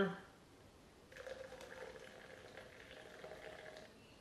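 Syrup poured from a small glass jar into a plastic shaker cup: a faint, steady trickle that starts about a second in, its pitch creeping up slightly as it runs.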